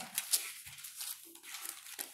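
Thin Bible pages rustling faintly as they are flipped by hand, with a few soft ticks.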